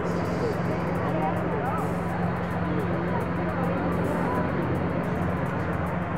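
Outdoor ambient noise: a steady rumble with a constant low hum, and faint voices wavering over it.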